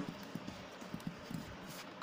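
A few faint, irregular taps of a ballpoint pen against paper, over quiet room tone.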